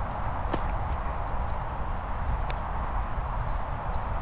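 Footsteps on grass with a steady rustling hiss and low rumble, the sound of a handheld recorder being carried by someone walking.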